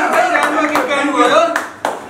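A group of voices calling out over handclapping, with a few sharp claps near the end.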